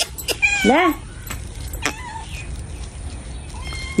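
Domestic cat meowing twice in quick succession within the first second, with a few sharp clicks around it; the rest is quieter.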